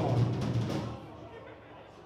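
A quick run of drum-kit hits, low bass drum and toms, in the first second, then dying away.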